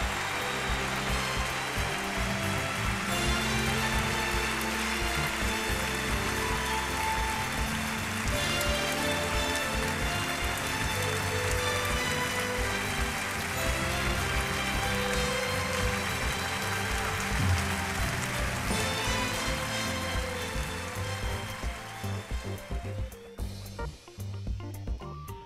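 Background music with long held notes over a steady hiss, fading down over the last few seconds.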